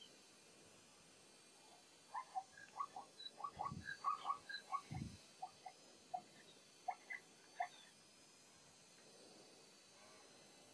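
A run of short, high chirping animal calls, dozens in a few seconds and thinning out near the end, with two low thuds among them in the middle.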